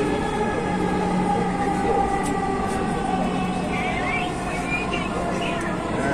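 Dhaka Metro Rail (MRT Line 6) train heard from inside the carriage while running on its track: a steady rumble with a faint motor hum and whine underneath.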